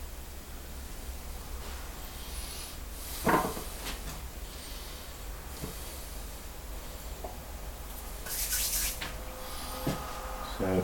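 Handling sounds of a clay bowl and pottery tools on a potter's bench: a knock about three and a half seconds in as the bowl is set down, a few lighter taps, and a brief scrape near the end, over a steady low hum.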